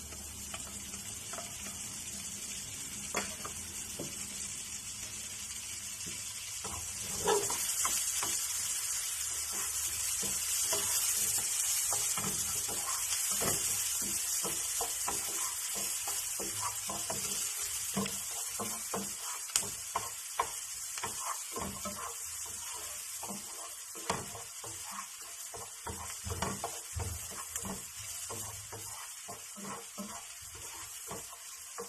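Minced onion sizzling in butter in a nonstick frying pan, a steady frying hiss that swells a few seconds in. A wooden spatula scrapes and taps against the pan again and again as the onion is stirred.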